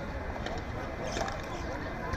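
Padel rally with two light pops about half a second and a little over a second in, over steady outdoor background noise and faint voices.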